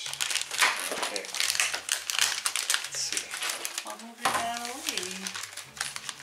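Plastic Lego minifigure blind-bag packets crinkling and rustling in an irregular crackle as they are handled and slid across a table.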